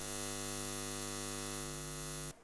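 Neon-sign buzz sound effect: a steady electrical hum with many even overtones.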